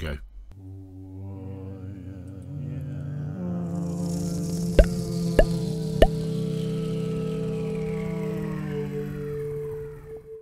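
Intro music for a channel title card: a sustained synth chord swells up, overlaid with a rising shimmer. Midway through come three sharp accented hits about half a second apart, and then the chord holds and fades out.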